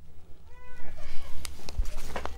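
A domestic cat meows once, a short call that rises and falls in pitch about half a second in. A few light knocks from handling follow.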